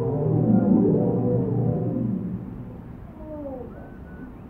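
Muffled background film-score music from a 1950s TV movie heard through a wall: sustained, swelling notes that fade down over the second half, with a few faint sliding tones near the end.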